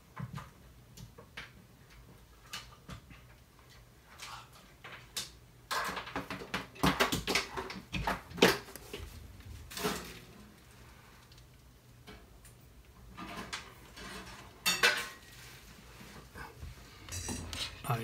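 Hard objects clinking, knocking and clattering as things are rummaged through and moved around, in irregular clusters. The busiest stretch is in the middle, with more near the end as a breadboard project is set down.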